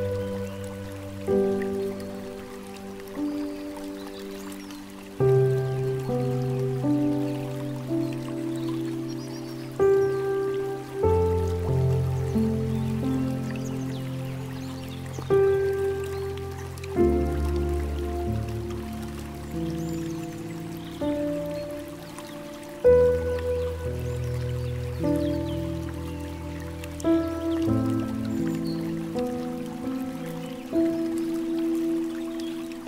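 Slow, gentle piano music, single notes and soft chords with deep bass notes under them, over a trickle of flowing water.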